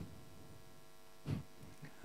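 Faint, steady electrical hum from the hall's amplified microphone system. One short vocal sound, like a brief chuckle, comes about a second and a half in.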